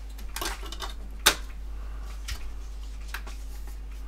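Plastic clicks and rattles of a portable DVD boombox's top-loading disc lid being handled as a CD is loaded. One sharp snap about a second in, likely the lid being shut, is followed by a couple of fainter ticks.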